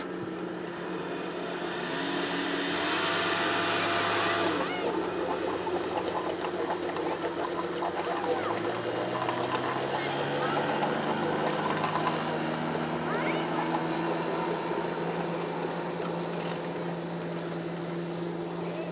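Outboard motor on a small wooden race boat running steadily at low speed, with a second engine note rising about eight seconds in and then holding. There is a brief rush of noise a couple of seconds in.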